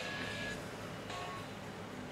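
Quiet background: a low steady hum under a faint hiss, with a few brief faint tones.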